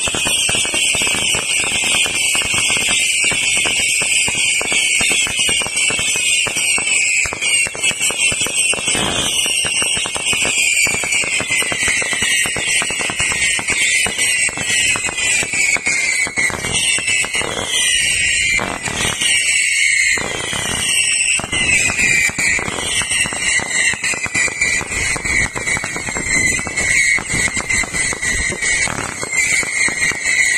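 Dense fireworks barrage: many whistling fireworks sounding together, each pitch sliding downward, over a continuous crackle of bursts and bangs.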